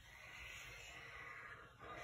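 Felt-tip marker dragged across paper in one long stroke: a faint, soft scratch lasting about a second and a half.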